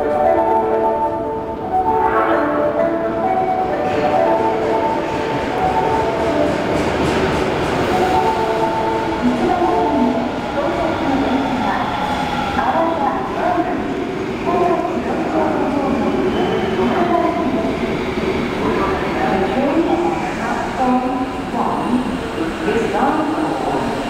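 Kintetsu 7000 series subway train approaching along an underground platform, its running noise steady under the station's reverberant air. A chime melody fades out in the first few seconds, and a public-address voice talks over the train noise.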